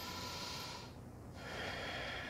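A woman breathing audibly while she holds a balancing yoga pose. One breath ends about a second in, and the next begins about half a second later.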